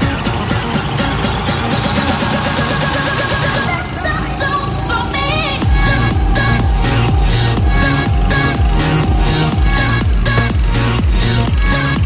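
Electronic dance music: a rising build-up breaks off about four seconds in, then drops into a steady heavy beat about six seconds in.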